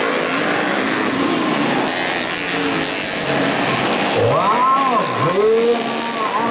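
Motocross dirt bike engines running hard on the track, a dense mechanical rasp. About four seconds in, an engine revs up and falls back twice in quick swells.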